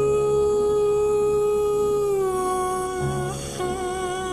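Song with a singer holding one long note for about three seconds, the pitch stepping down slightly partway through, then a shorter wavering note near the end, over soft accompaniment.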